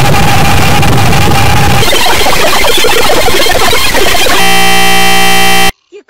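Extremely loud, deliberately overdriven and clipped jumble of noise and sounds, an ear-splitting edit blast. About four seconds in it turns into a harsh steady buzzing tone for over a second, which cuts off suddenly.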